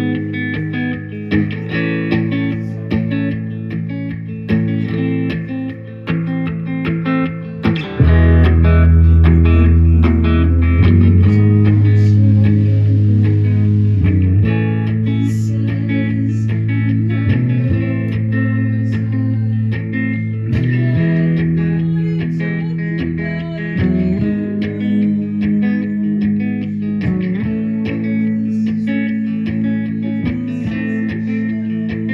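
Live rock band playing: electric guitars and bass guitar over drums. About eight seconds in the band gets louder, with a heavier bass line.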